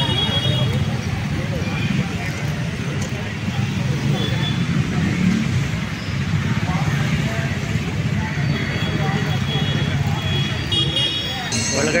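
Steady street traffic: a continuous low rumble of passing cars and motorbikes.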